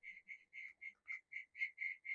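Faint, rapid series of short high chirps from a calling animal, about six a second, all at the same pitch.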